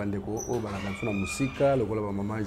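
Only speech: a man's voice talking, with no clear words picked out.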